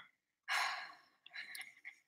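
A woman's breathy sigh after a sip of tea: one exhale about half a second in that fades over half a second, followed by quieter breaths and a few faint clicks.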